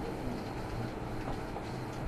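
Steady background room noise with a low hum and faint, distant voices.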